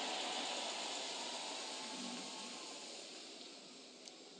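Large congregation applauding and cheering, a dense even wash of crowd noise that slowly dies away.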